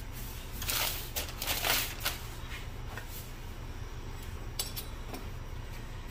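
Hands working pie dough and flour on a wooden board: a few short scraping rustles in the first two seconds, then quieter handling with a couple of light clicks near the end.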